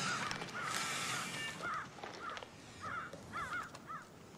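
Birds calling: a string of short, arched calls, coming faster in the last second and a half, over a rushing background noise in the first second and a half.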